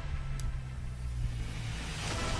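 A low, steady bass drone from the bulletin's background music, with a brief faint tick about half a second in.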